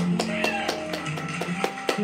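Guitar playing the closing bars of a live song, plucked and strummed notes ringing on.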